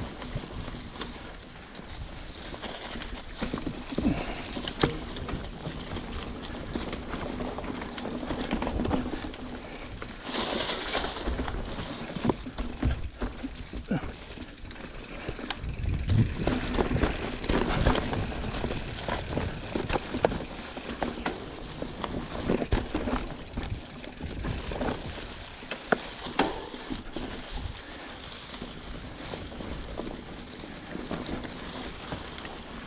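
Giant Trance 29 full-suspension mountain bike ridden over leaf-covered singletrack: tyres crunching through dry leaves, with frequent clicks and knocks from the bike passing over roots and rocks.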